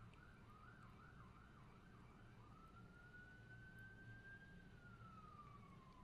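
Very faint emergency-vehicle siren: a fast yelp of about three rising-and-falling sweeps a second, switching about two and a half seconds in to a slow wail that rises and then falls away.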